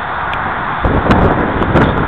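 Wind buffeting the microphone: a steady hiss that turns into a louder, gusty rumble just under a second in. A few faint clicks from hands handling the model's wiring are mixed in.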